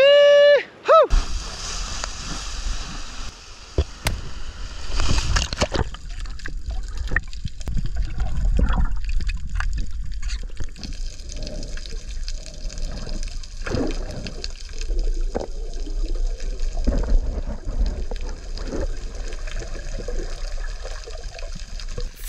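Water sloshing and gurgling around a camera held underwater, heard muffled with a steady low rumble and scattered small splashes, as a freediver swims and dives.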